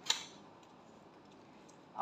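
A single light tap on an aluminium foil food tray as a small sauce cap is set down in it, then faint room tone.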